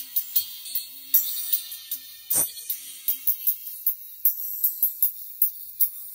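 Music played only through a pair of small paper-cone tweeters fed through a series capacitor from a Pioneer SX-707 receiver: mostly treble, with quick percussion ticks several times a second and almost no bass or midrange. About four seconds in, the lower treble fades and the sound gets thinner still.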